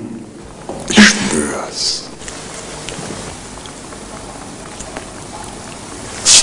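A person's short, breathy vocal sound about a second in, followed by a steady, fairly quiet hiss.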